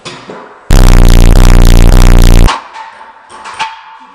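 A very loud, heavily distorted synthesized sound effect, edited in over the footage, lasting about two seconds from just under a second in, with two brief dips. A sharp click follows near the end.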